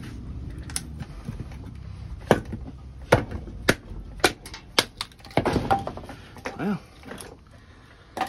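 Mallet striking the spine of a Mora knife to baton it through a small log: about seven sharp knocks at irregular spacing, roughly two a second at their quickest, then a short patch of wood handling as the split pieces fall apart. It is a hard-use test meant to make the blade bend or fail.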